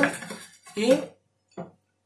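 A steel chef's knife blade scraping against a ceramic plate as chopped leek is pushed off it, with a single short spoken word partway through.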